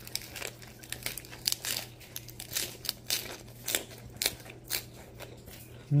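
Fresh lettuce leaves crunching and crinkling in a string of short, irregular crisp strokes, about a dozen, over a faint steady low hum.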